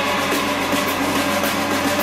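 Live rock band playing loudly through a club PA: distorted electric guitars and bass holding sustained, droning chords over the drums.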